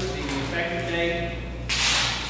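Speech: a voice reading aloud, with a loud hissing consonant near the end, over a steady low electrical hum.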